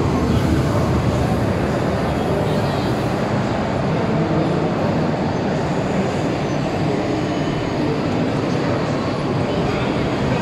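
Steady, loud background noise of a busy exhibition hall, with indistinct voices of people in the aisles mixed into it.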